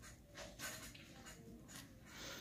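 A pen scratching on paper as a number is written, in a few short, faint strokes.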